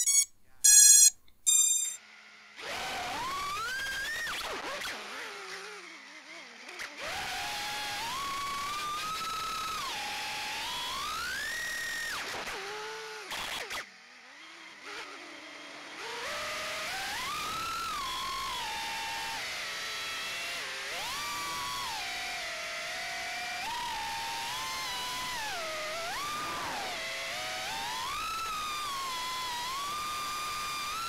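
Brushless motors of a Diatone GT M3 FPV quadcopter whining, heard from its onboard camera. The pitch rises and falls constantly with the throttle, and the motors nearly cut out for a couple of seconds around the middle before spooling back up. A short electronic jingle with beeps ends in the first two seconds.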